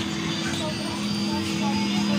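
Jolly Roger racing-car carousel kiddie ride playing its song through its speaker while it turns, with a steady low hum underneath.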